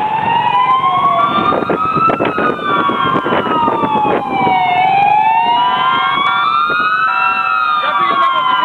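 Fire engine sirens wailing, each rising and falling slowly about every five seconds, with a second, higher-pitched siren overlapping out of step.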